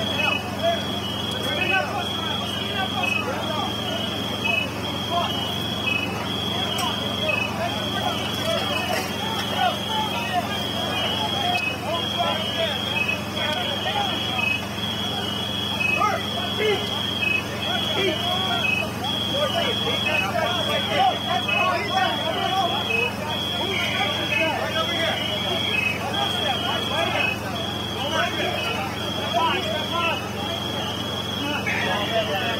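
Firefighters and EMS crews talking over each other, with a high-pitched electronic beep repeating evenly and without pause over a steady low engine hum.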